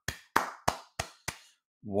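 One person clapping hands: five evenly spaced claps, about three a second, in applause.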